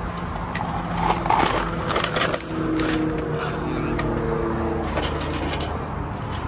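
Chain-link fence wire and a Honda dirt bike clinking and scraping against each other as the bike is forced through a gap in the fence: irregular clicks and knocks over a steady low hum.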